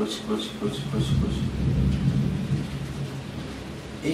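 A low rumble that swells about a second in and eases off over the next couple of seconds, with no clear pitch.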